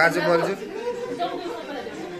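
Several people's voices talking at once: overlapping chatter, loudest at the very start.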